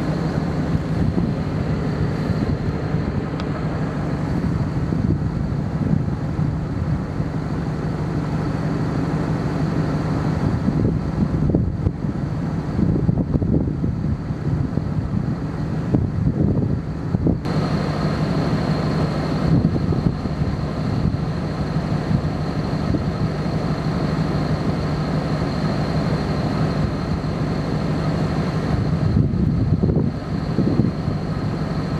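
Wind buffeting the microphone: a steady, loud rumble with no clear breaks.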